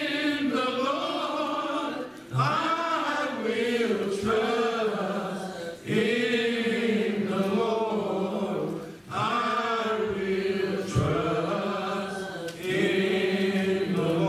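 A small group of men singing a slow hymn, holding long drawn-out notes in phrases of about three to four seconds, each followed by a short pause for breath.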